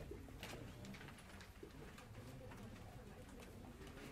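Quiet room tone with a low hum and a few soft rustles of paper pages being turned.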